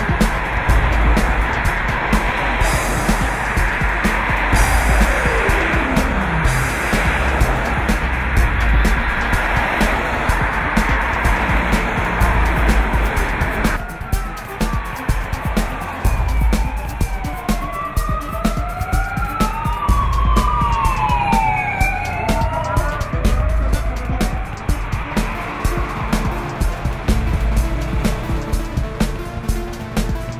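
Cars passing close by on the road, with rushing tyre and wind noise and one vehicle going by with a falling pitch. From about halfway, several sirens wail at once, rising and falling over one another for about ten seconds.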